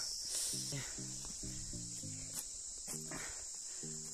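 Steady, high-pitched insect drone in woodland, with background music of short stepped notes playing over it.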